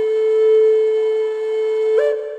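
Closing music: one long held note on a wind instrument, with a new note starting right at the end.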